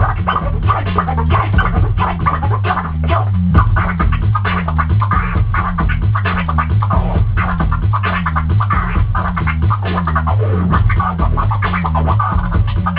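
Turntable scratching: two DJs trading rapid vinyl scratches back and forth in call-and-response over a looping hip-hop beat with a repeating bass line.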